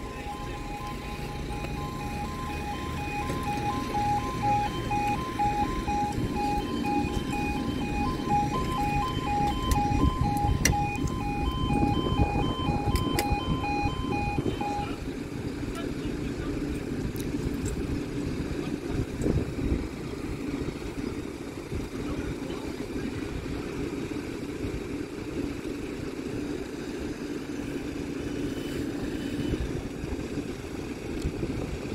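UK level crossing warning alarm sounding a rapidly pulsing two-tone yodel while the barriers lower; it cuts off suddenly about halfway through, once the barriers are down. Under it runs the steady low rumble of a diesel multiple-unit train's engine, growing louder through the first half and then holding steady.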